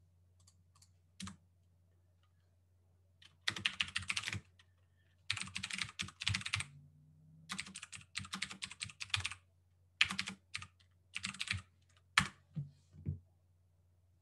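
Typing on a computer keyboard: quick runs of keystrokes in about five bursts of roughly a second each, with short pauses between them.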